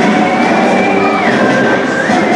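Electronic sci-fi background soundscape playing over loudspeakers: held synth tones over a dense wash of noise, the highest tone gliding down about a second in and back up near the end.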